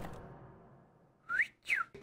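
Background music fading out into near silence, then a short two-note whistle: the first note glides up, the second glides down.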